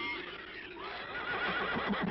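Giant shrew monster sound effect from a 1950s film soundtrack: a high, warbling, whinny-like squeal that begins about a second in over a hissy background.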